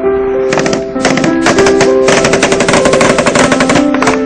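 Automatic rifle fire over background music: a long, rapid burst of shots in the second half, while the music holds sustained notes underneath.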